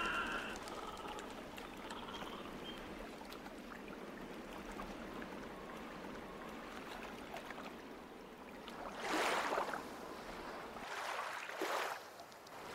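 Water trickling and lapping around a small wooden boat being pushed along with a pole, with occasional light knocks. Two louder rushing swells of water come about nine and eleven seconds in.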